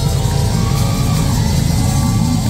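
Live metal band playing a held, low distorted guitar and bass chord with no drum hits, loud in the room.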